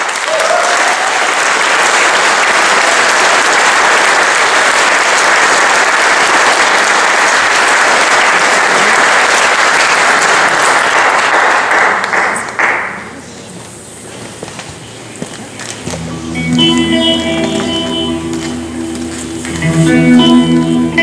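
Audience applause in a hall, steady for about twelve seconds and then dying away. A few seconds later a new piece begins quietly with sustained instrumental notes.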